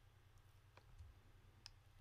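Near silence: room tone with a low steady hum and about three faint clicks from the computer's mouse and keyboard while the 3D view is being moved.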